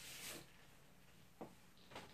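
Near silence, with a faint papery rustle at the start as a LaserDisc in its paper inner sleeve is slid out of its cardboard jacket, and a small tick about one and a half seconds in.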